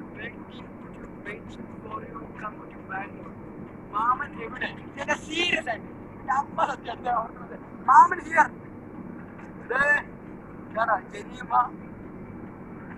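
Men's voices talking and calling out loudly, heavier from about four seconds in, over the steady rumble of a moving Suzuki car heard from inside its cabin.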